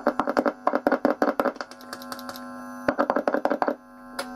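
A metal screwdriver tapped rapidly on a newly fitted Fender Pure Vintage '55 Jazzmaster pickup, heard as quick pitched clicks through the amplifier over a steady hum. It is a tap test to check that the pickup is wired and working. There is a run of taps for about two seconds, a short pause, then a second run.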